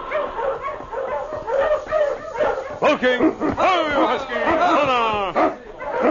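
Sled dogs barking and yelping, a radio-drama sound effect, with short pitched cries that rise and fall, strongest in the second half.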